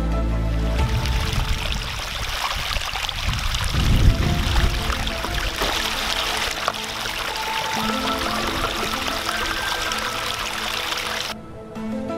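Water of a shallow rocky stream rushing and splashing, with a louder swirl of splashing about four seconds in as a glass bottle is plunged and rinsed in it. Background music runs faintly underneath, and the water cuts off abruptly near the end.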